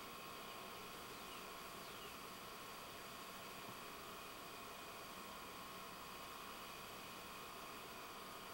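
Quiet room tone: a steady low hiss with faint, unchanging high-pitched whine tones.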